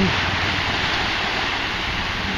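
Small ocean waves breaking and washing up a sandy beach, with wind, heard as a steady rushing noise.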